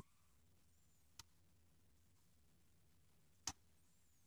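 Near silence broken by two faint, sharp clicks, about a second in and again near the end: a steel lock pick working the pin stack of an American 1100 padlock while it is held under tension.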